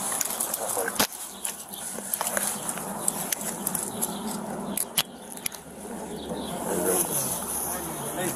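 Handcuffs being put on a woman's wrists behind her back, heard through a police body camera's microphone: sharp metal clicks about a second in and again around five seconds, over rustling of clothing and handling noise.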